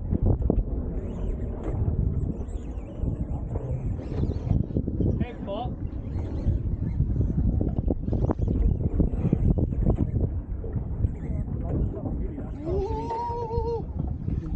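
Wind buffeting the microphone on an open boat at sea, a heavy uneven rumble with scattered knocks, under indistinct voices. Near the end a single drawn-out vocal call rises, holds, and falls away.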